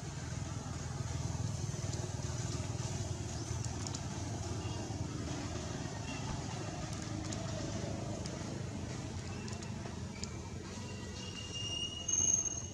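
Steady low rumble of outdoor background noise, with a few short, faint high-pitched chirps toward the end.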